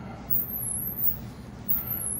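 Paper napkin wiping the outside of a glass, with faint soft rubbing over a steady low hum.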